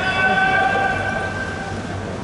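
A long, steady whistle-like tone with overtones, held for nearly two seconds and fading near the end, over the hubbub of a pool arena.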